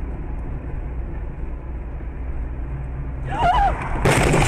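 Steady low rumble of a car driving, heard through a dashcam inside the cabin; near the end a person cries out in a high, wavering voice.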